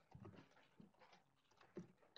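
Near silence with faint, irregular soft taps of computer keyboard typing.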